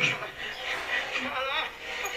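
Quiet, indistinct speech, with no distinct non-speech sound standing out.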